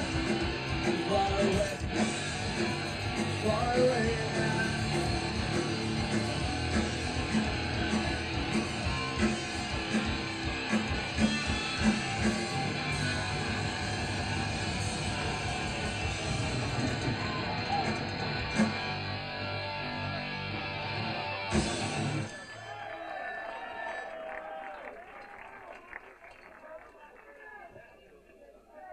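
A punk rock band playing live in a small club, with loud electric guitar, bass and drums. The song stops abruptly about three-quarters of the way through, leaving fainter crowd voices.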